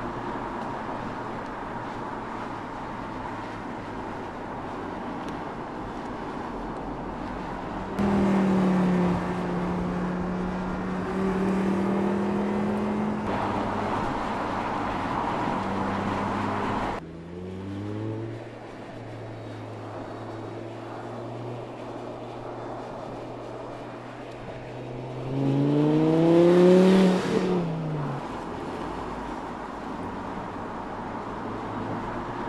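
Audi R8 Spyder's V10 engine driving at steady speed, heard in several abruptly cut shots with the engine note changing level and pitch at each cut. Near the end the note rises in pitch and grows loudest as the car revs past, then drops away.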